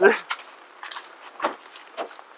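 A few light, scattered clicks and clinks, the sharpest about one and a half seconds in, after a brief spoken word.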